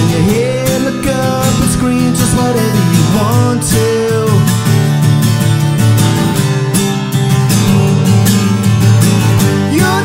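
A man singing to his own steadily strummed acoustic guitar.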